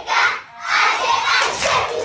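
A classroom of schoolchildren shouting together in unison: a short shout, then a longer one starting about half a second in.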